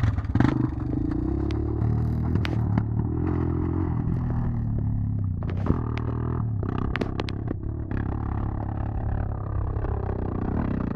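Suzuki LT-Z400 quad bike's single-cylinder four-stroke engine running hard as the bike gets under way, its pitch rising in the first second and then wavering with the throttle. Sharp clattering knocks come through, thickest around the middle.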